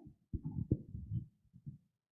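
A muffled, indistinct voice speaking away from the microphone: low, dull syllables with no clear words, stopping shortly before the end.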